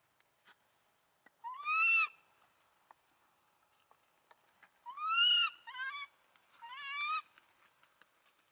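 Baby macaque crying with high coo calls that rise and fall in pitch: two long calls about two and five seconds in, then shorter ones in quick succession near the end.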